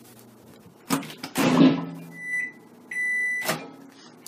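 A click and a short clatter a little after a second in, then two electronic beeps at one high pitch, a short one and a longer one about a second later that ends in a click.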